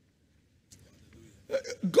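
Near silence for about the first second, then a man's voice starts speaking loudly in the last half second.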